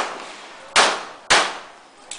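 Two pistol shots about half a second apart, each sharp and loud with a short decaying tail.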